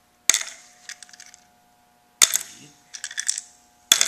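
Plastic buttons dropped one at a time into a small plastic cup as they are counted: three sharp clicks, each followed by a brief rattle, about a quarter second in, just after two seconds, and near the end.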